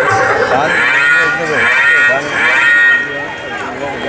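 A woman sobbing into a microphone, her high, wavering voice carried over loudspeakers with other voices around it; it eases off about three seconds in.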